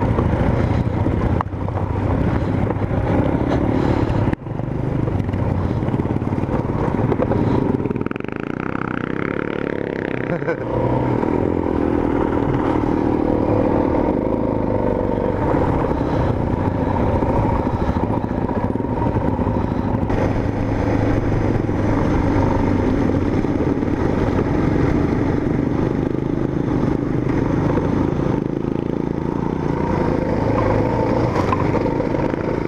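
Single-cylinder dual-sport motorcycle engine running under varying throttle on a rough, rocky trail, with a brief cut in sound about four seconds in and a change in revs around eight to ten seconds in.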